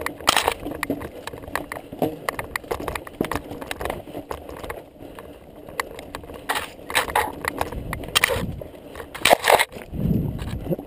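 Mountain bike rolling fast over loose rock, with tyres crunching on stones and a constant rattle and clatter of knocks from the bike. The loudest jolts come in bursts a second or so long, several of them near the end.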